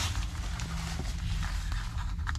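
Rustling and handling of a paper bag and clothing inside a car, with a few faint clicks, over a steady low hum.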